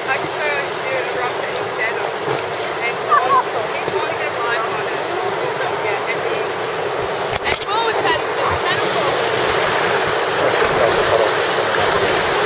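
Rushing river water, a steady wash of noise from a raft moving on fast, choppy water, with faint, indistinct voices of rafters over it.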